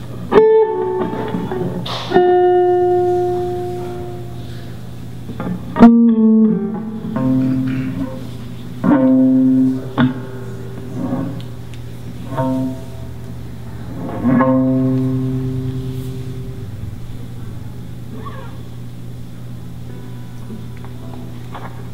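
Guitar played slowly and sparsely: about nine separate plucked notes and chords, each left to ring and fade, over a steady low hum. The playing stops in the last few seconds, leaving the hum.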